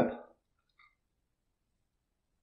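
A man's voice trailing off at the end of a sentence, then near silence with a few faint tiny ticks just under a second in.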